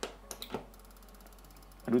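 A sharp click as a strobe light's plug is pushed into a wall socket, followed by a couple of smaller clicks. Just under a second in, the old strobe starts firing with a faint, fast, even ticking.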